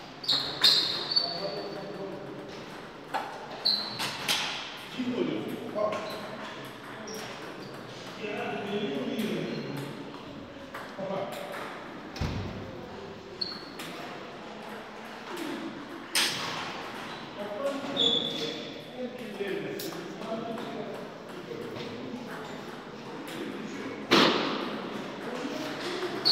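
Celluloid-type table tennis ball clicking off rubber paddles and the table in a short rally at the start, then occasional single ball hits and bounces between points, with a new rally starting near the end. Background voices murmur throughout.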